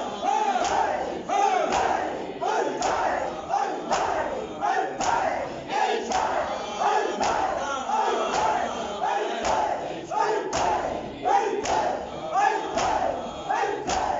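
A crowd of men chanting a mourning refrain (noha) together while beating their chests in matam. Sharp hand-on-chest slaps land in rhythm, roughly once a second, over the massed voices.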